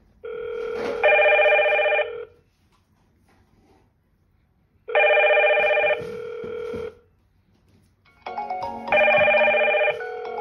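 Hikvision video intercom indoor monitors ringing for an incoming call from the door station, in three ringing bursts of about two seconds each with quiet gaps between them. A second, more melodic ringtone joins the last burst near the end.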